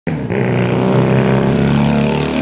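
Honda CD175's small four-stroke parallel-twin engine running as the motorcycle rides up and passes close by, through new dual megaphone mufflers on the original head pipes. A steady, loud engine note.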